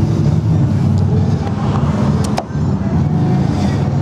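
A motor vehicle engine running steadily in the background, with one sharp click about two and a half seconds in.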